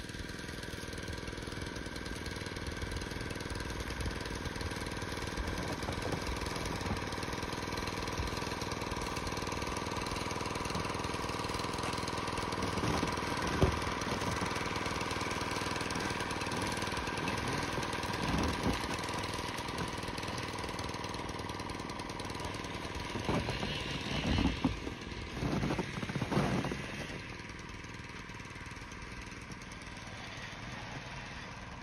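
A steady engine hum with several held tones, joined by a few brief louder noises about halfway through and again a few seconds before the end.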